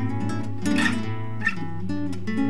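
Banjo music laid over the picture: a quickly picked tune of plucked notes running steadily through.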